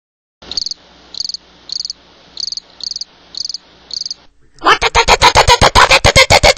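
Crickets chirping, a short chirp about every half second, over a faint steady hum. Near the end this gives way to a sudden loud, fast run of sharp hits, about ten a second.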